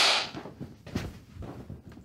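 Film clapperboard snapped shut right at the start, a sharp crack that dies away quickly, followed by a few faint knocks and handling sounds.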